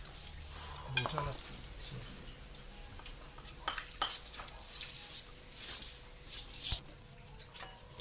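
Ceramic plates and glasses clinking and scraping as people eat grilled fish and rice with their hands, with scattered short clicks and rustles.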